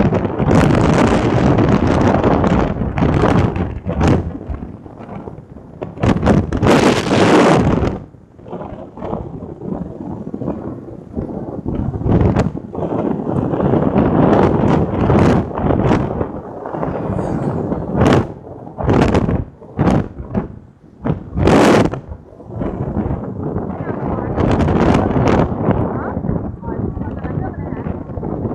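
Wind buffeting the microphone on a moving motorbike, a loud rough rush that surges and eases in gusts, with brief lulls about a third and three quarters of the way through.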